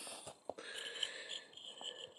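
Plastic action-figure parts handled and fitted by hand: a couple of soft clicks, about half a second in and near the end, over a faint, wavering high-pitched tone.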